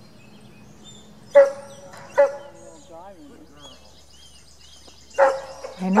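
A dog barking twice, about one and a half and two seconds in, with a few quieter calls after, then more barking near the end.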